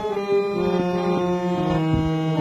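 Harmonium playing sustained reed notes that move from one held pitch to the next, under a man's singing voice holding a long note.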